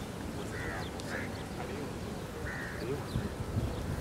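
A bird giving three short, harsh calls over steady outdoor background noise, with a few low thumps near the end.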